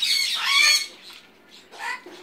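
A parrot gives a loud, harsh squawk lasting under a second, then a shorter, quieter call near the end.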